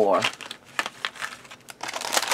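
Craft paper crinkling and rustling as it is handled: a run of small crackles, then a longer rustle near the end.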